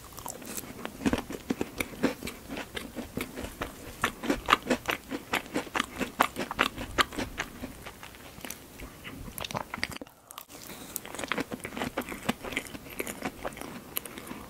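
Close-miked eating of a strawberry tart with a pastry crust: biting and chewing, with quick wet mouth clicks and soft crunches and a brief pause about ten seconds in.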